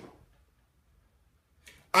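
Near silence: a pause in a man's speech, his voice trailing off at the start and starting again at the very end.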